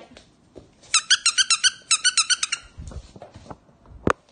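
A squeaky toy squeaked in a quick run, about eight high squeaks a second for a second and a half. A few dull thuds and a sharp knock follow near the end.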